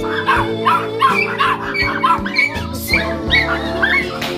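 Small dogs in a wire crate yipping and whining excitedly in quick short calls, about two or three a second, over background music.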